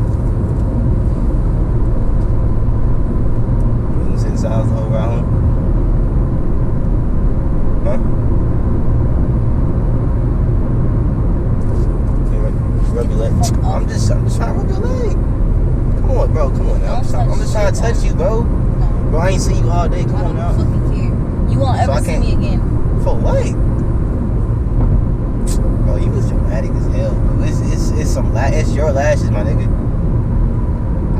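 Steady low road and engine rumble inside the cabin of a moving car, with a man's indistinct talk over it in the second half.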